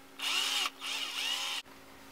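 Cordless drill spinning a thumbtack clamped in its chuck, run in two short bursts with a whine each time, the second a little longer.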